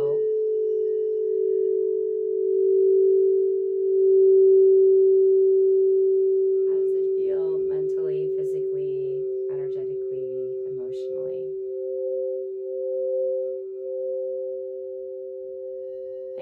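Two 8-inch frosted crystal singing bowls ringing with long, steady, pure tones close together in pitch, swelling and fading slowly against each other. About ten seconds in, the higher bowl's tone starts to pulse in regular swells as it is played again.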